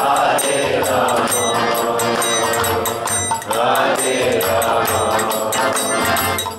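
Kirtan: a devotional mantra chant sung over a harmonium drone and a violin line. Hand cymbals tick and a drum thumps, keeping a steady beat.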